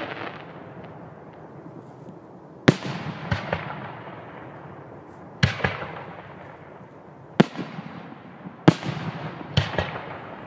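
Fireworks bursting: five sharp bangs a second or two apart, each followed by a few smaller pops and a fading rumble.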